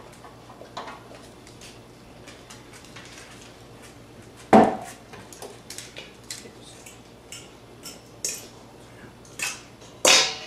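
Fork clicking and scraping against a bowl as guacamole is mixed, with one louder clatter about halfway through.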